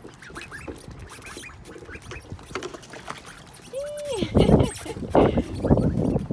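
Domestic ducks in a plastic kiddie pool give short soft calls, then one louder call just before four seconds in. After it come a few loud bursts of splashing water as they bathe.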